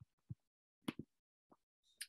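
Near silence broken by a few faint, short clicks, about five scattered through two seconds.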